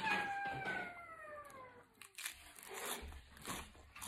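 Crunching bites and chewing of crisp lettuce leaf wrapped around soy-marinated shrimp and salmon. A high whine falls steadily in pitch over the first two seconds or so.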